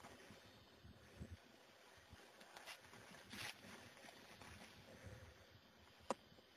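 Near silence: faint outdoor room tone with a few soft rustles and scuffs.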